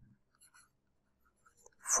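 Faint scratching and tapping of a stylus writing on a pen tablet, with a man's voice starting just before the end.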